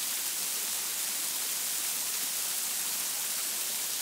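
Pea-sized hail and freezing rain falling steadily, an even hiss with no single hits standing out.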